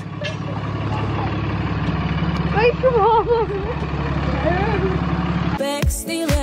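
A pickup truck's engine idling, a steady low rumble, with faint voices in the background. Near the end it cuts off abruptly and pop music starts.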